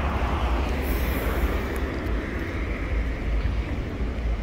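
Steady street traffic noise with a deep low rumble, cars passing on a busy multi-lane city road.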